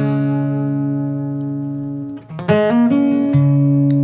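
Background music: acoustic guitar chords struck and left to ring, about two seconds each, with a few quick plucked notes between them.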